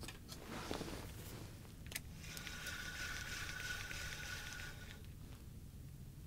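Spinning reel being cranked: a faint steady whir with fine ticks for a couple of seconds, after a rustle of handling and a single click.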